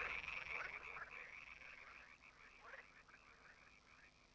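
A chorus of small animals calling, a dense rapid croaking chatter that fades away steadily.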